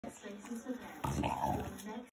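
French bulldog gnawing and licking at a whole apple held up to its mouth, with mouth and breathing noises; a louder rough burst comes about a second in and lasts under a second.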